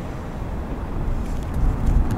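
Low outdoor rumble, strongest at the very bottom of the range, growing somewhat louder towards the end.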